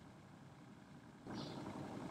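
Near silence at first, then a faint steady hiss of room tone from a little past halfway.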